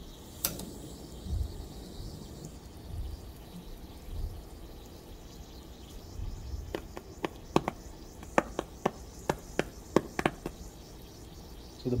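A run of small, sharp, irregularly spaced pops, starting a little after halfway: hydrogen bubbles from lithium reacting with water igniting at the water's surface.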